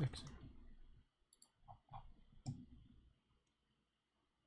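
A few faint clicks from a computer keyboard and mouse while code is finished and run, the sharpest about two and a half seconds in.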